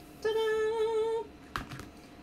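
A woman humming one steady held note for about a second, followed by a brief knock.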